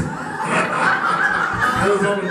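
People laughing and chuckling in a church sanctuary, mixed with some talk.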